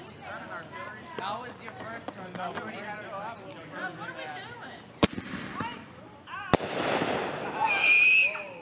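A consumer artillery-shell firework fired from a mortar tube: a sharp bang about five seconds in, then a second sharp bang a second and a half later, followed by about a second of hiss, amid people chatting.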